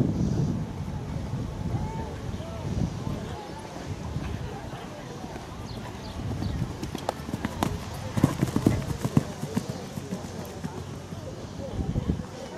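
Haflinger stallion cantering on grass turf, its hoofbeats dull and uneven, with a run of sharper, louder hoof strikes between about seven and nine seconds in.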